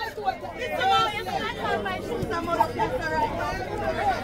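Overlapping chatter of several spectators' voices close to the microphone.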